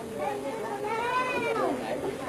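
People's voices, with one drawn-out call that rises and falls in pitch about a second in.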